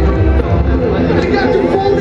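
Hardstyle dance music played loud over a festival sound system, a steady kick drum about two and a half beats a second, with voices over it.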